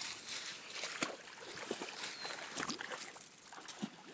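Footsteps crunching and rustling through dry fallen leaves: irregular crackles and rustles.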